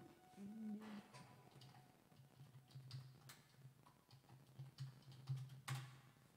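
Near silence with faint scattered clicks and taps, the loudest a little before the end, over a low, softly pulsing hum.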